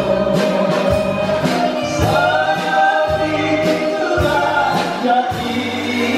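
Live band playing Greek-style taverna music: bouzouki and electric guitar over a steady beat, with sustained sung vocal lines.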